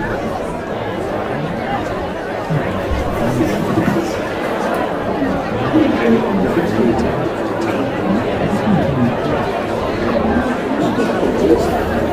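Café crowd ambience: many people talking at once in indistinct, steady chatter.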